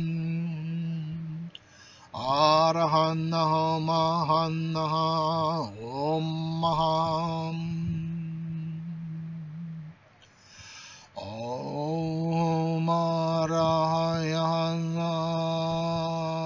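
A man's voice chanting long held notes on one steady low pitch, the vowel sound shifting within each note. Each note slides up into the pitch, with pauses for breath about two seconds in and about ten seconds in.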